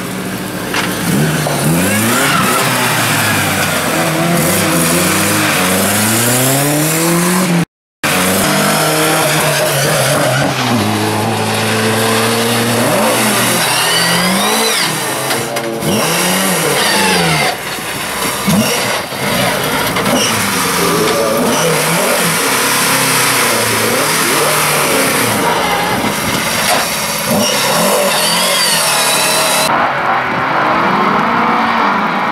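Bilcross race cars driven hard through a corner, one after another. The engines rev up and drop off again and again as the throttle is worked. The sound cuts out completely for a moment about eight seconds in.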